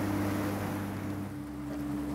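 Boat engine running steadily under way, with wind and water rushing past. About a second and a half in, the engine note changes and gets quieter.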